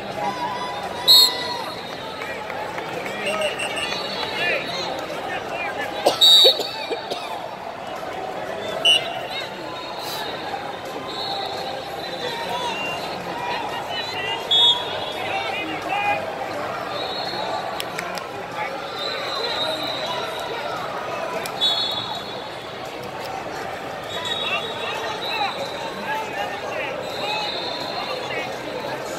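Wrestling-arena crowd noise: constant babble and shouting voices, with short shrill whistle blasts from referees that recur every few seconds. The loudest blasts come about a second in and again around 6, 9, 15 and 22 seconds.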